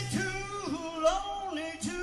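Live rock and roll band playing: one melody line holds long notes that slide up and down over quiet backing, with brief breaks between phrases.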